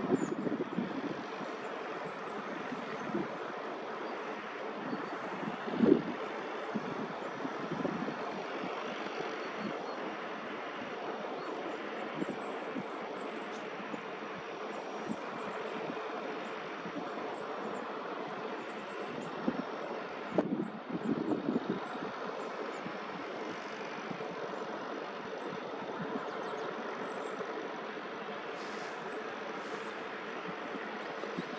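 Steady rushing wind outdoors, with gusts buffeting the microphone a few times, loudest about six seconds in and again around twenty-one seconds in.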